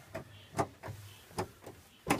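A handful of sharp clicks and knocks from a de Havilland Beaver's cockpit controls being handled during the pre-start setup: levers and the wobble-pump handle moved by hand.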